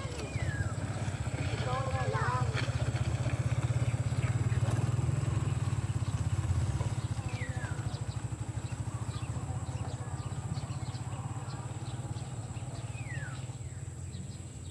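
A small engine running with a low, rapid putter, growing louder over the first few seconds and fading after about the middle.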